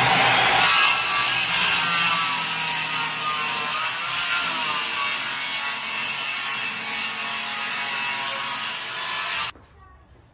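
Electric hand planer running under load, shaving wood, with a steady motor whine under the cutting noise; it switches off abruptly near the end.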